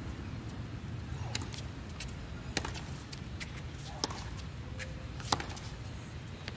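A tennis ball bounced on a hard court: sharp knocks roughly a second apart, the loudest near the end, over the low murmur of a stadium crowd.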